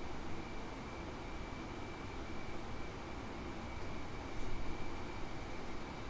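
Room tone: a steady hiss and low hum with a faint, thin high-pitched whine, and a couple of faint clicks about four seconds in.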